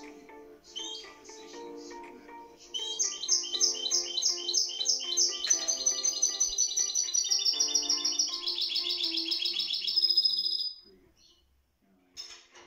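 A caged finch singing. It gives a few faint chirps at first, then from about three seconds in a loud run of rapidly repeated high notes, switching to a new note every second or two and ending in a fast trill near the end. Soft background music plays underneath.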